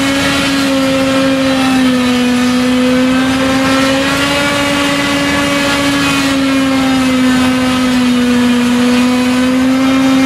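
Claas Jaguar 960 self-propelled forage harvester chopping triticale from the swath with its pick-up header: a loud, steady machine drone whose pitch sags slightly and recovers twice. A tractor runs alongside.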